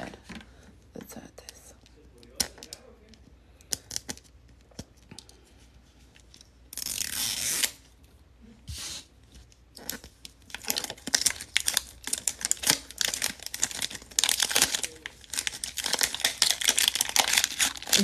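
Plastic wrapper film being torn and peeled off a Mini Brands capsule ball. Light plastic clicks at first, a louder rip about seven seconds in, then steady crinkling through the second half.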